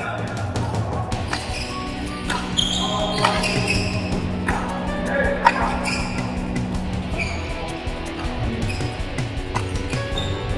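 Badminton doubles rally: sharp cracks of rackets striking the shuttlecock, about one to two seconds apart, over background music and voices.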